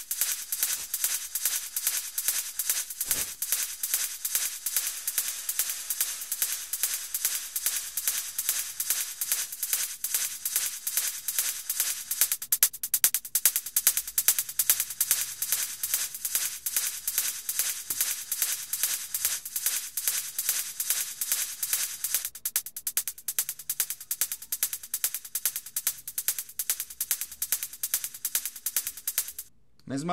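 An electronic drum loop playing back, a quick steady run of crisp, high percussion strokes with little bass, through a Valhalla Room reverb set to a short room decay of about a third of a second. It stops suddenly just before the end.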